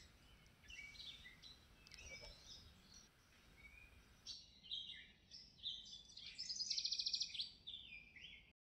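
Faint outdoor birdsong: several small birds chirping on and off, with a fast, rattling trill about six and a half seconds in that is the loudest call.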